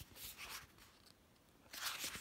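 Paperback book pages being turned by hand: a few soft, brief papery rustles.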